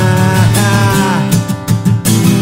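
Acoustic guitar strummed with a man singing long held notes that slide down at their ends; the sound dips briefly just before the end.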